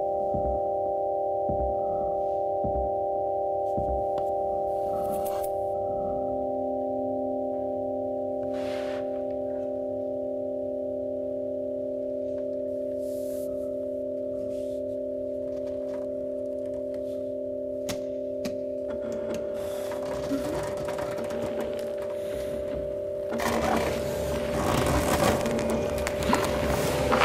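Electronic drone music from a film soundtrack: a sustained chord of several steady tones, with soft low thumps in the first few seconds. From about two-thirds of the way through, a rough, noisy texture builds over the drone and grows louder near the end.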